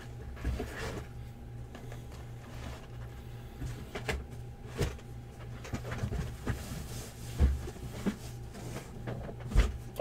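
Cardboard trading-card boxes being lifted off a stack and set down, giving a scattering of light knocks and scrapes. A steady low hum runs underneath.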